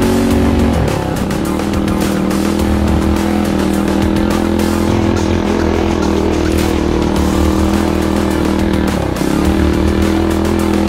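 Minibike's small single-cylinder engine running under throttle, its pitch dropping briefly about a second in and again near the end as the throttle is eased and reopened.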